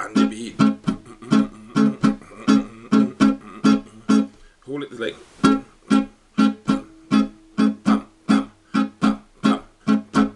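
Guitar strummed in a choppy dancehall rhythm on a barred A chord, held on the one chord, about three short strums a second, with a brief break about five seconds in.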